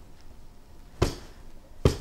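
Two firm back blows with the heel of a hand on the back of an infant first-aid training manikin lying face down: sharp thumps, one about a second in and another near the end, as taught for dislodging an obstruction from a choking baby.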